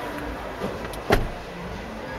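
Steady background noise of an exhibition hall, with one sharp knock a little over a second in.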